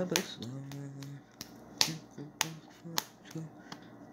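A person's voice rising in pitch, then holding a low hum, then making short voiced sounds, over sharp clicks at irregular intervals.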